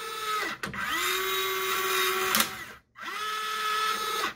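An RC servo motor and gear train driving a combat robot's clamper-lifter arm, whining as the arm swings. The whine stops and restarts twice, its pitch rising each time it starts and dropping each time it stops.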